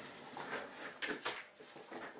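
Faint rustling and light taps of trading cards being handled, with a few brief clicks about a second in.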